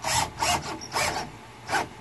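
Cordless drill driving a screw through a lift-strut's metal mounting bracket into the plywood underside of a bed platform, in four short bursts, the last one briefest.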